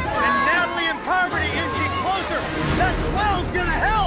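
Several people shouting and cheering encouragement at once, their voices overlapping, over background music.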